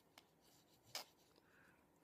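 Near silence with faint handling sounds and one short tap about a second in, as a squeeze bottle of white craft glue is worked against cardstock tabs.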